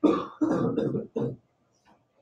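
A person laughing briefly in three short bursts, ending about a second and a half in.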